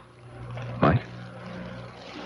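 A low steady hum runs under a pause in the dialogue. A brief voice sound comes about a second in.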